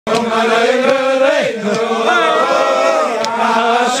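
A group of men singing a lively tune loudly together in unison while dancing in a circle.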